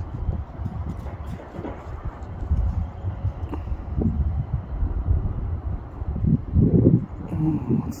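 Wind buffeting a handheld phone's microphone: an uneven low rumble that swells about three-quarters of the way through.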